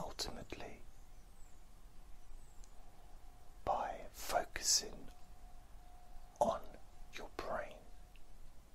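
A man whispering close to the microphone in three short phrases with long pauses between them. A faint steady hum lies under the gaps.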